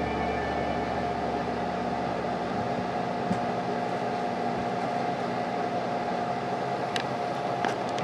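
Steady hum and hiss from an idle electric guitar amplifier, with no notes being played, and a couple of faint clicks near the end.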